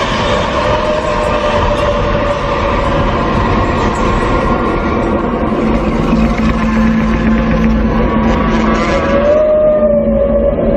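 Horror film soundtrack: a loud, dense rushing rumble with held drone tones over it, the low drone growing stronger about six seconds in.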